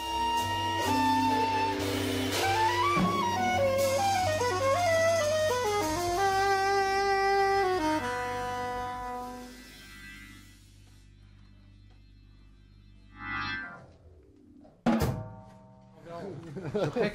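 Small jazz group playing: a soprano saxophone plays a phrase of long held notes over a drum kit, with a low sustained note underneath. The phrase dies away about ten seconds in, leaving only faint sound, and a short loud sound comes in just before the end.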